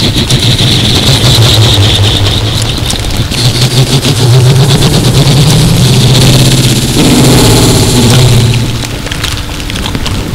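A loud, steady low droning hum with a hissing high edge, engine-like in character. About seven seconds in, a rising pitched tone briefly joins it.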